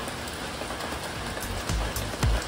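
Rain falling on a street, a steady even hiss. Low thuds come in near the end.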